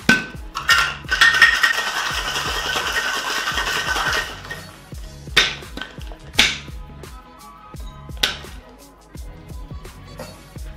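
Ice rattling hard inside a copper tin-on-tin cocktail shaker in a vigorous wet shake of an egg cocktail, lasting about four seconds. Then three sharp metallic knocks on the shaker, a second or two apart, as the sealed tins are struck to break them apart. Chillhop background music with a low steady beat runs underneath.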